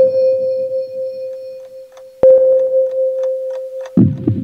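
Dark electronic track played on a Roland MC-101 groovebox and TR-6S drum machine: a long, held synth tone is struck again about two seconds in. Over it runs a sparse, clock-like ticking at about four a second in the second half, with the bass coming back in at the very end.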